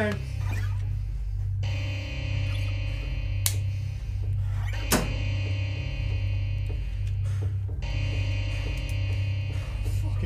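Horror film score: a pulsing low drone under sustained, layered tones that drop out and come back twice. Two sharp clicks cut through it, about three and a half seconds in and again near the five-second mark.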